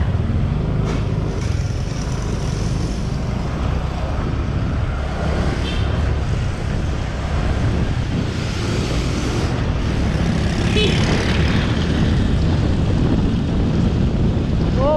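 Honda Click 150i single-cylinder scooter riding along a wet street, its engine and tyres under a steady low rumble of wind buffeting an unprotected GoPro microphone.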